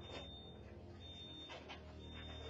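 Faint high electronic beeping, about half a second on and half a second off, typical of a store intrusion alarm sounding, over a low steady hum.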